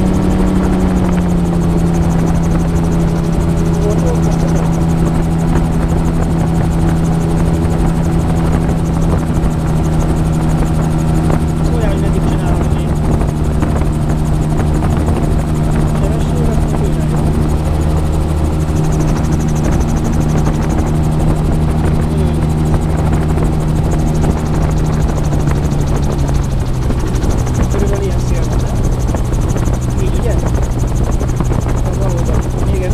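AutoGyro MTOsport gyroplane's engine and pusher propeller droning steadily, heard from the open cockpit with wind rushing past. The engine note drops a step about a second in and again near the end as power is eased back on the approach to the runway.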